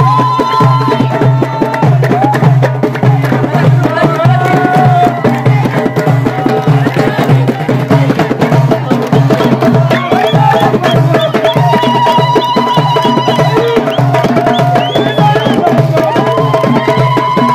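Moroccan Amazigh folk music: hand-held frame drums beaten in a steady, driving rhythm, with voices singing over them.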